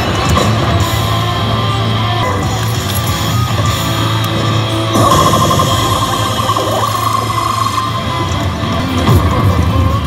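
Loud guitar-driven rock music playing from a Basilisk Kizuna 2 pachislot machine during its screen effects, getting louder about halfway through.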